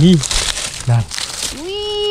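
Dry fallen leaves crinkling and crackling as a hand pushes through the leaf litter to reach a mushroom.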